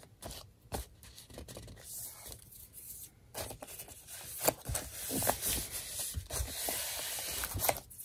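Hands rubbing and sliding paper envelope pages over a tabletop. A few light taps at first, then steadier paper rustling and scraping from about three and a half seconds in.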